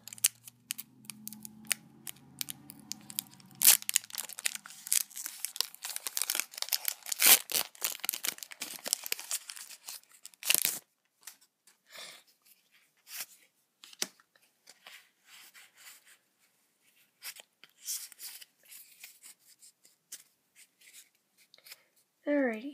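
Foil Pokémon trading card booster pack wrapper being torn open and crinkled, with dense sharp crackles for about the first ten seconds. After that come sparser, quieter clicks and rustles as the cards are handled.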